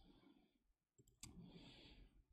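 Near silence broken by one faint click a little over a second in: a presentation remote or mouse advancing the slide.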